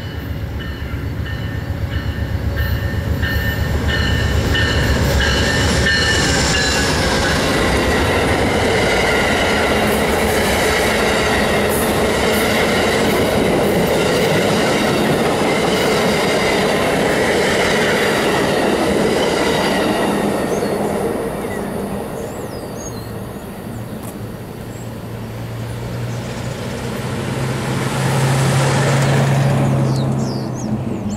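Amtrak passenger train of stainless-steel Amfleet coaches passing close by at speed. The sound builds over the first few seconds, stays loud, and fades about twenty seconds in. A low hum swells near the end.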